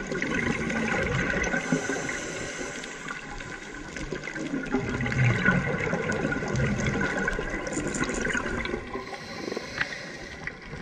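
Underwater scuba breathing: regulator exhaust bubbles gurgling and rushing, swelling and easing with the breaths.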